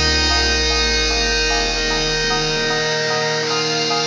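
Electric guitar tuned to drop B playing a melodic line of notes changing about every half second, over held backing tones. A deep bass note fades out about three seconds in.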